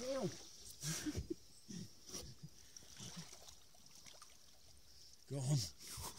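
A man's laughing exclamation, then a few faint splashes and trickles of lake water as the wels catfish is let back into the water, and a voice again near the end.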